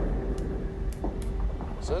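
Space shuttle cockpit in flight as movie sound design: a deep, steady rumble with a constant hum that cuts in suddenly, with a few faint high clicks over it. A man begins speaking near the end.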